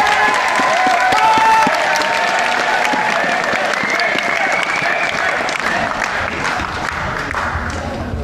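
A school audience of teenage pupils applauding and cheering, with shouts and high-pitched cheers over dense clapping. The applause slowly dies down.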